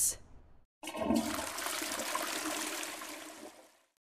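Toilet flush sound effect: a rush of water that starts suddenly about a second in and dies away over the next three seconds.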